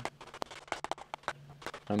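Modified ball-peen hammer dishing an 18-gauge mild steel sheet cold over a sandbag: a quick, irregular run of light hammer blows, about five a second.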